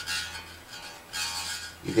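Electric guitar strings ringing briefly about a second in as a feeler-gauge blade is slid under a pressed-down string. The 16-thousandths blade just touches the string, so the neck relief measures exactly 0.016 inch.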